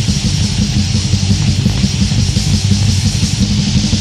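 Heavy metal band playing an instrumental passage: distorted electric guitars and bass over fast, dense drumming, with no singing.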